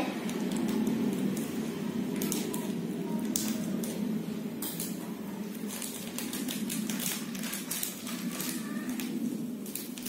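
Plastic sachet crinkling and being torn open by hand: irregular crackles and rustles over a steady low hum.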